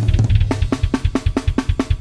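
A sampled acoustic drum kit, programmed in Superior Drummer, plays a grindcore beat at 280 bpm with fast, evenly spaced kick and snare strokes. For about the first half second the pattern gives way to a dense run of low drum hits, then the fast steady beat picks up again.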